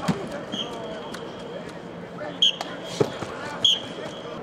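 Blocking pads being struck by linemen in a hitting drill: a series of sharp thumps, the loudest three in the second half, with short high squeaks among them and voices in the background.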